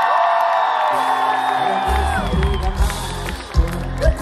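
A concert crowd cheering and singing, with many voices gliding up and down. About a second in, a low bass note enters from the PA, and just before two seconds a heavy, pulsing bass beat kicks in as the next song starts.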